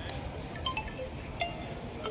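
Outdoor background noise with a few brief, scattered high tones at different pitches.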